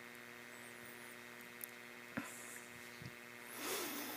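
Steady low mains hum, a faint electrical drone. There is one small click about two seconds in and a soft rustle near the end.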